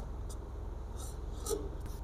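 A blue felt-tip colour marker writing on paper: a few short, quiet strokes as a circled digit is drawn, the clearest about one and a half seconds in, over a steady low hum.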